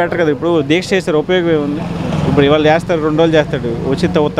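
A man speaking Telugu in an interview, close to the microphone, over a steady low hum.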